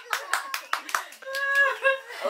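Hands clapping and slapping together in a hand-clapping game: a quick, uneven run of about eight sharp claps in the first second or so. A voice holds a short steady note near the end.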